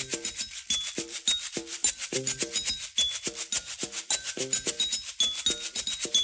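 A plastic bottle filled with grains, shaken as a homemade maraca in a fast, even rattle. Over it come short pitched notes and brief high ringing tones, struck by hand on other kitchen objects, all making up one rhythmic groove.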